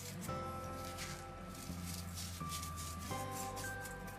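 Quiet background music of held, sustained notes that change pitch every second or so.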